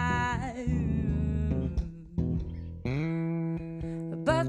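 A woman singing a wavering held note that ends about a second in, accompanied only by an electric bass playing sustained notes and chords that carry on through the rest.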